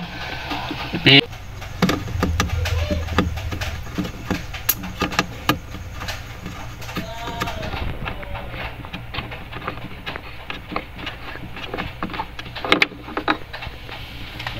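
Light, irregular clicks and scraping as a small 10-watt bulb is twisted out of a refrigerator's plastic lamp socket by hand, over a low steady hum.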